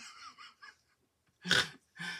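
A woman laughing: soft, breathy giggling, then one short, louder burst of laughter about one and a half seconds in.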